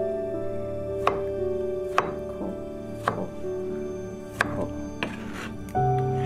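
Kitchen knife slicing peeled tomatoes on a wooden cutting board: several sharp knocks of the blade meeting the board, about one a second, over soft piano music.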